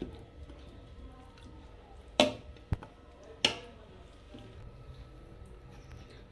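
Steel spatula knocking twice against an aluminium cooking pot, about a second apart, with a smaller click between, over a low steady background hum.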